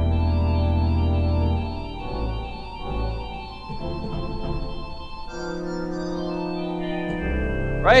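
Pipe organ playing a slow jazz turnaround: held chords over a bass note, changing to a new chord roughly every two seconds.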